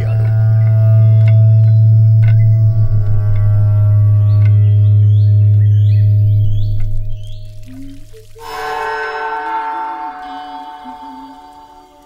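Horror film score: a loud, deep sustained drone with faint high sliding tones over it, which fades about seven seconds in and gives way to a new chord of sustained tones.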